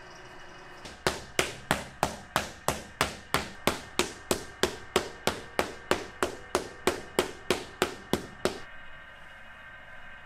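A hand paddle beating a flat slab of clay on a round wooden base, about three even strikes a second, starting about a second in and stopping after about eight and a half seconds. The slab is being flattened into the base of an earthenware jar.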